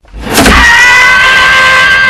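A man's long, loud scream of pain, held on one high pitch that sags slightly, then cut off abruptly.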